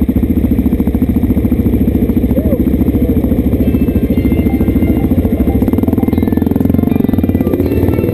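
Single-cylinder supermoto engine idling with a rapid, even pulse. Music comes in faintly over it from about halfway in.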